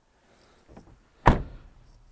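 A 2019 Nissan NV200 cargo van's front passenger door being shut: a light knock, then one loud thunk a little past the middle.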